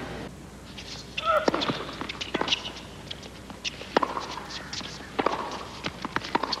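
Tennis ball being struck by rackets and bouncing on a hard court during a rally: sharp single pocks, one about every second or so, starting about a second in.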